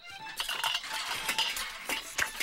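Cartoon sound effects of dishes and cutlery clattering and clinking, many quick irregular clinks, over light background music.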